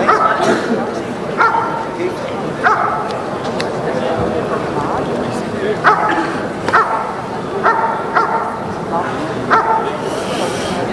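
German Shepherd Dog barking at a hidden helper, the hold-and-bark of a protection routine: sharp single barks about a second apart, with a pause in the middle.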